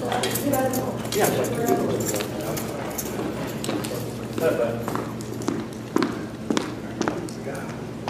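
Indistinct voices talking in a room, with a few sharp footsteps on a hard floor, about two a second, in the second half.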